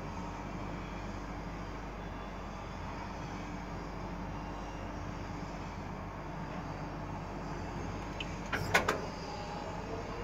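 Steady low hum of distant city ambience, with traffic and construction noise heard from high above. Near the end comes a brief cluster of a few sharp knocks, louder than the hum.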